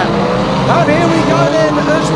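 Several banger racing cars' engines running and revving together, their pitches rising and falling over one another.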